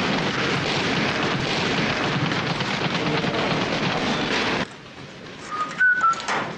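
Boxing-gym din from a film soundtrack: a dense clatter of many punches and knocks, cutting off suddenly about four and a half seconds in. A brief squeak follows near the end.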